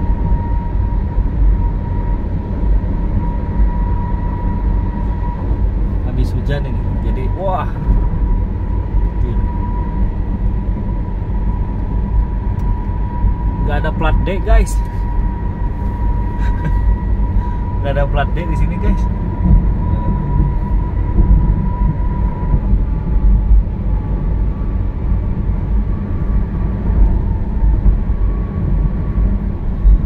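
Steady road and engine rumble heard inside a car cabin at highway speed on a concrete toll road. A faint steady high whine runs along with it and stops about two-thirds of the way through, and brief snatches of voice come in a few times.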